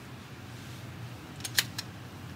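Three quick, sharp clicks, the middle one loudest, as a Glock pistol is handled and lifted out of its hard plastic case, over a steady low hum.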